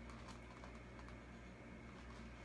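Near silence: room tone with a steady low hum and a few faint, scattered ticks.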